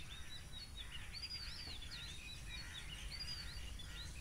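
Faint birdsong: many short chirps and whistles that rise and fall in pitch, over a low background hum.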